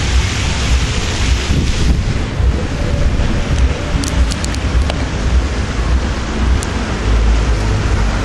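Wind buffeting the camcorder microphone: a loud, steady low rumble with a few brief high clicks around the middle.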